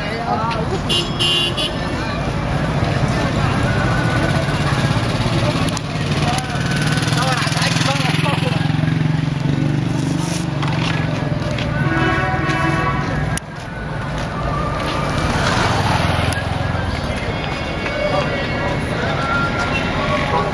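Busy street at night: people talking over the steady hum of car engines close by, with a short car horn toot about halfway through.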